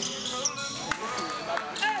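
Basketball game on a hardwood gym court: sneakers squeaking in short chirps as players move, and a basketball striking the floor once sharply about a second in. A shout of "hey" near the end.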